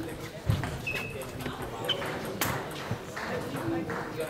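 Table tennis hall background: voices talking, with scattered short clicks and knocks of balls from other games and a couple of brief high pings.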